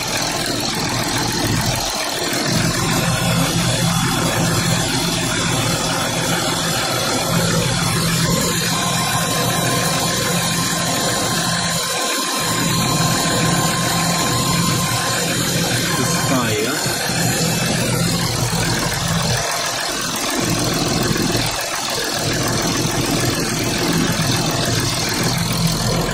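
Volkswagen Touareg's six-cylinder engine idling steadily, with one of its fuel injectors tapping.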